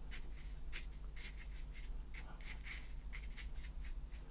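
Bristles of a flat brush dabbing and scrubbing dark watercolour paint onto paper in a string of short, irregular strokes. A steady low hum runs underneath.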